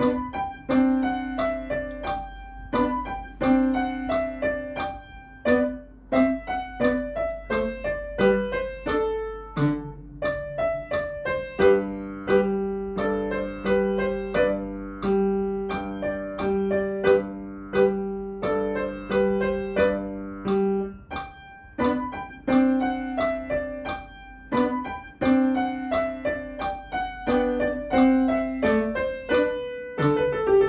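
Upright piano playing a lively scherzando at tempo 88: quick, detached notes throughout, with lower notes held underneath for several seconds in the middle.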